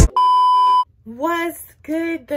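A single steady electronic beep, one pure high tone lasting under a second, cut off sharply, followed by a woman's voice.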